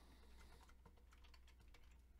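Faint computer keyboard typing: a quick run of key clicks starting a little under a second in.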